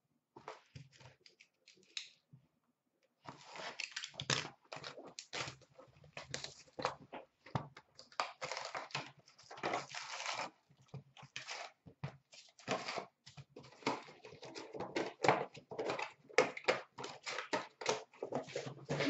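Foil hockey-card packs from a 2016-17 Upper Deck Fleer Showcase box crinkling and rustling as they are handled, pulled from the box and stacked. The noise comes in quick, irregular crackles, sparse at first and almost continuous from about three seconds in.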